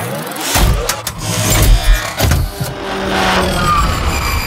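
Intro sound effects: a motor vehicle engine revving, mixed with several sharp hits and some music.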